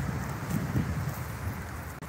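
Wind blowing across a phone's microphone: a steady, low, noisy rush with no clear events.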